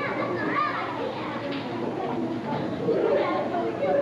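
Children's voices speaking on stage, heard from the back of a large hall.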